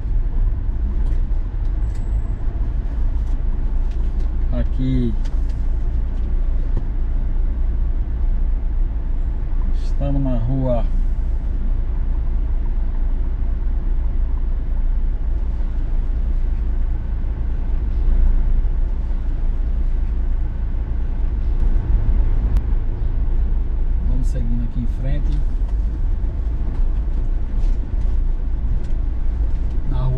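Troller 4x4 driving through town streets, its engine and road noise heard from inside the cabin as a steady low drone. Brief snatches of a voice come about five, ten and twenty-four seconds in.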